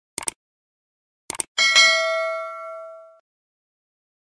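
Subscribe-button animation sound effect: two quick double mouse clicks, then a bright notification-bell ding that rings out for about a second and a half.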